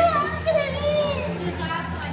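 Children's high-pitched voices calling and chattering, loudest near the start and again about half a second in, over a steady low hum.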